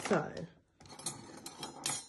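Plastic bag of grated cheese crinkling and rustling as it is handled and opened, with a sharp click near the end as a metal spoon is picked up.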